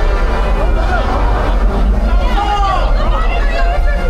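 Riders' voices chattering and calling out in wavering, gliding tones over a steady low rumble on a dark indoor boat ride.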